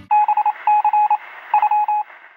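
Electronic beeping at one pitch, a thin phone-like sound, in three quick runs of short beeps.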